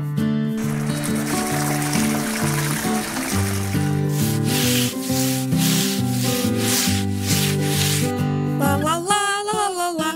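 Cartoon sound effect of a bristle brush scrubbing, a run of about seven rubbing strokes, over light children's background music. Near the end there is a short rising call from a character.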